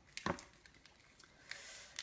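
Faint handling of a small rolled paper slip being unrolled by hand: a few soft crackles, with a sharper pair just after the start and another about a second and a half in.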